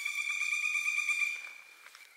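A steady high-pitched whine holding one pitch, fading away after about a second and a half, with a few faint clicks.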